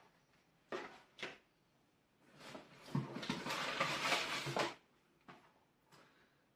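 Small cardboard model-kit boxes being handled: two light knocks, then a couple of seconds of rustling and scraping as a box is pulled out of a cardboard shipping carton, ending with a small click.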